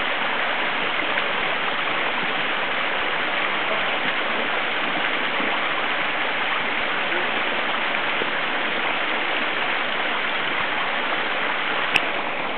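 Forest stream rushing over rocks below the bridge: a steady, even rush of water that does not change.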